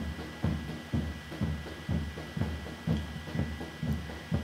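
Footfalls of a large pack of runners in running shoes passing close by on an asphalt road: an irregular series of soft thuds, several a second, over a low hum of moving crowd.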